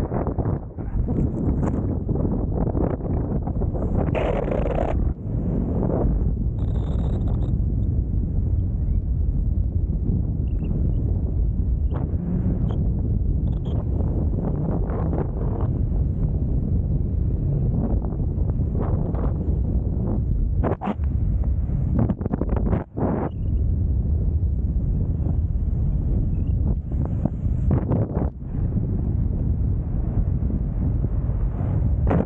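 Wind buffeting the camera microphone as a BASE jumper descends under an open parachute canopy: a steady low rumble with a few brief sharper noises along the way.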